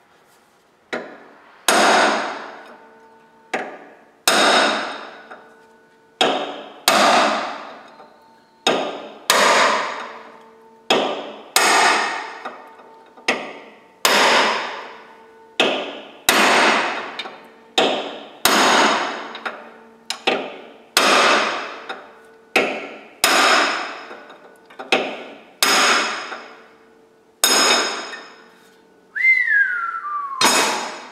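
Hammer blows on a long steel punch held down into a forklift, a steady run of strikes about one every second and a quarter, each ringing out with a metallic tone. Near the end a short squeal falls in pitch.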